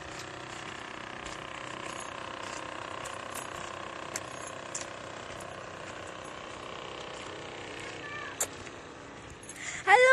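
Steady outdoor background noise picked up by a phone held at arm's length, with scattered light clicks and a faint voice in the background near the end.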